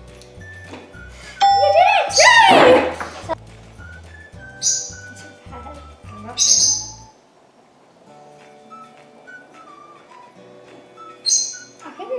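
Background music with a steady repeating bass line and held notes; the bass stops about seven seconds in and lighter music carries on. About two seconds in comes the loudest sound, a burst of sliding pitches, and short high hissing effects sound three times.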